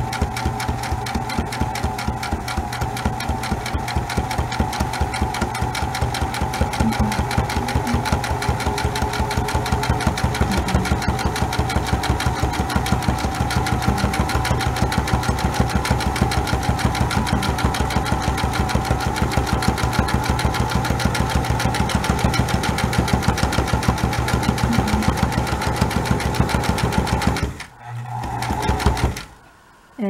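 Electric sewing machine stitching steadily, its motor humming under a rapid, even clatter of needle strokes. Near the end it stops, runs again in a short burst, then stops with the needle at the corner of the hem.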